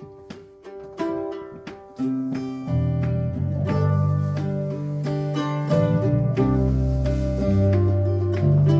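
Mandolin and acoustic guitar picking out a slow melody, the plucked notes ringing and fading. About three seconds in, low held notes come in under them and the music grows louder.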